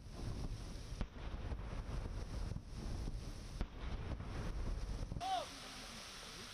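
Wind buffeting the microphone in a heavy low rumble, with a few sharp knocks. It cuts off about five seconds in to a quieter steady hiss, with one short falling call.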